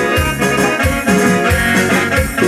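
A dance band playing a chilena, melody lines over a steady, regular bass beat.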